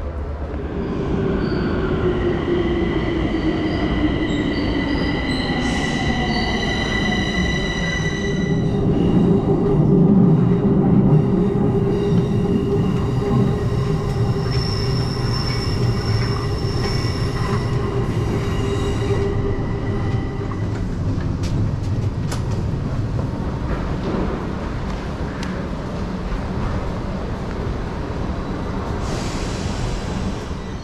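Metro train heard from inside the car: rumble of the wheels on the rails with a high electric whine, and a lower tone falling steadily in pitch over the first several seconds, then a steadier run. A few sharp clicks come in past the middle.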